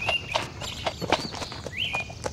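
Horse's hooves clopping on a dirt track as a ridden horse is pulled up, a few uneven hoof strikes, with birds chirping.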